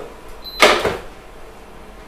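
A frying pan set down on the glass top of an induction hob, making one loud clunk a little over half a second in.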